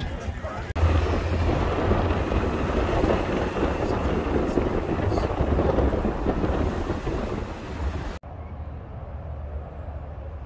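Steady outdoor noise with a strong low rumble, as from traffic or wind on the microphone. It cuts off abruptly about eight seconds in and is replaced by a quieter steady noise.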